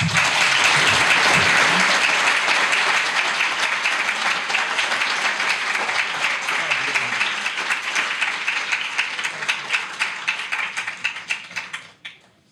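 Audience applauding for about twelve seconds. It starts all at once, loud, and tapers off gradually before stopping near the end.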